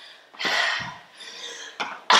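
A heavy, breathy exhale from a woman out of breath after a hard set of squats and lunges, followed by a short tap near the end.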